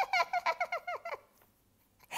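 A woman's put-on witch cackle: rapid high-pitched 'ha-ha-ha' notes, about eight a second, sliding down in pitch and dying away a little past a second in.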